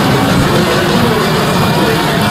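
Stadium crowd noise during a soccer match broadcast: a steady, loud din of many voices from the stands.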